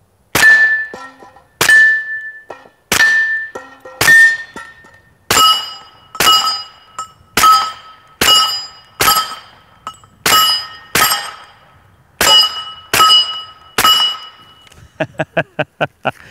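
Smith & Wesson M&P 45 pistol (.45 ACP) with an AAC Tyrant 45 suppressor, fired about fifteen times at an even pace. Each shot is followed by the ring of a steel target being hit: the first four ring at one pitch, the rest at the pitch of other plates. A quick run of small clicks comes near the end.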